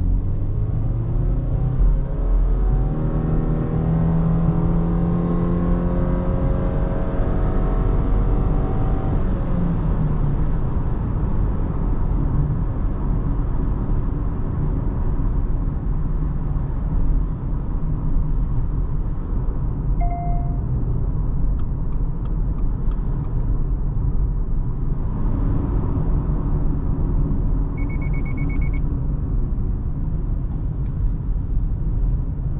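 Inside the cabin of a 2019 Subaru Forester e-BOXER hybrid, its 2.0-litre boxer four-cylinder engine accelerates, with the engine note rising over the first ten seconds or so. It then settles into steady tyre and road rumble while cruising. A short electronic chime sounds about twenty seconds in, and a brief pulsing beep comes near the end.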